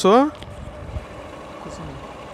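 Motorcycle running along a road, heard as a faint steady engine and road noise. A spoken word trails off right at the start.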